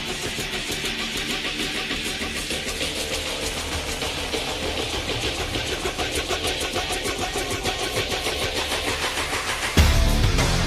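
Rock music led by electric guitar over a steady, regular pulse. Just before the end a much louder, deeper full-band section comes in suddenly.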